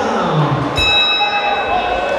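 Boxing ring bell struck once about three-quarters of a second in and ringing out for about a second, signalling the start of the round, over crowd voices in a large hall.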